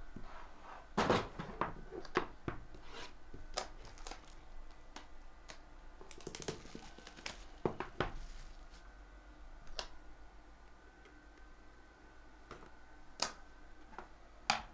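Small cardboard card boxes knocked and set down on a wooden tabletop, with plastic wrapping crinkling and tearing as a sealed box is worked open. Separate sharp knocks stand out about a second in, around the middle and near the end.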